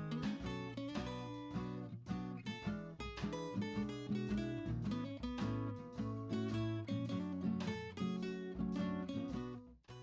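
Background music: acoustic guitar playing a steady run of plucked notes.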